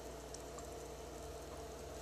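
Faint steady low hum with light hiss: background room tone, with no distinct sound event.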